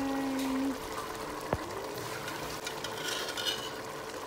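A spoon moving in a pot of melon (egusi) soup over a faint steady hiss, with one sharp tap about one and a half seconds in. The first moment holds the end of a drawn-out spoken 'bye'.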